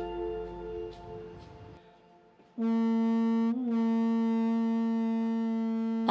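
A conch-shell trumpet (Japanese horagai) blown as a boarding signal: after background music fades out, one long, loud, steady note starts about two and a half seconds in, wavering briefly in pitch about a second later, then holding.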